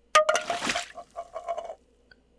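A cup of water is dropped: it hits the floor with a sharp knock, water splashes, and the cup clatters and rattles to a stop over about a second and a half.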